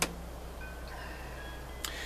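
A pause in speech filled by a steady low hum. A sharp click comes right at the start and another just before the end, with a few faint thin high tones in between.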